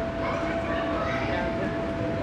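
Hubbub of children's voices and play in a large gymnastics gym, with a steady pitched hum beneath.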